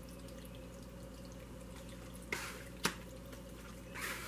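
Small tabletop water fountain trickling and dripping steadily, faint. About two and a half seconds in, a brief swish and then a sharp tap as a tarot card is drawn and laid down on the table.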